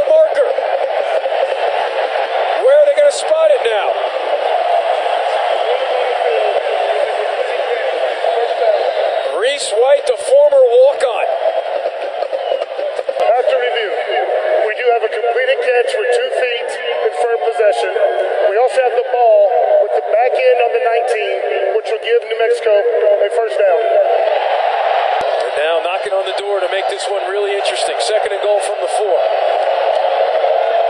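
Indistinct voices over a continuous background din, thin-sounding and without bass, never forming clear words.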